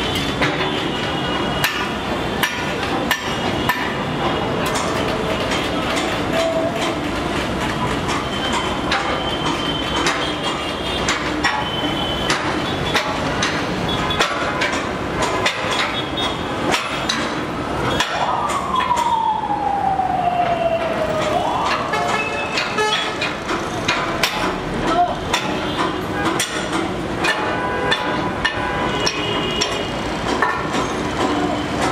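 Busy construction-site noise on a steel segment-erection truss, with sharp metal knocks and clanks repeating throughout. About two-thirds of the way through, a siren-like wail falls steadily in pitch for a few seconds, then jumps back up.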